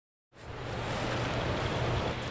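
A steady hiss of outdoor noise with a low hum underneath, starting suddenly after a moment of silence.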